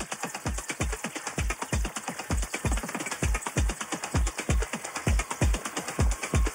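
Electronic dance music played by DJs: a steady four-on-the-floor kick drum at about two beats a second, with fast, ticking hi-hats over it.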